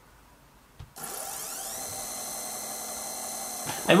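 Stepper motor jogged under GRBL control, starting about a second in: its whine rises in pitch as it accelerates, then holds steady at running speed.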